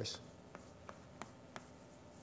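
Chalk on a blackboard: about four short, sharp chalk strokes and taps, spaced out, with a quiet room between them.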